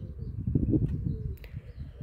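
A dove cooing faintly over a low rumble on the microphone, with a couple of faint clicks in the middle.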